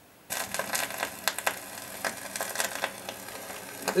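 Stylus of a Rigonda radiogram's tonearm set down onto a spinning gramophone record, about a third of a second in, followed by the record's surface noise: a steady hiss with frequent crackles and pops from the run-in groove, played through the radiogram's speaker.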